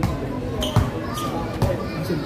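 A basketball being dribbled on the court: three bounces, a little under a second apart.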